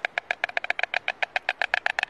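A pair of white storks clattering their bills: a rapid, even run of wooden clacks, about twenty a second. It is the pair's greeting display at the nest, here over their first egg.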